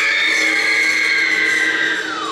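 A loud, high siren-like wail held on a steady pitch, sagging slightly near the end: a banshee-wail effect within a school concert band's performance.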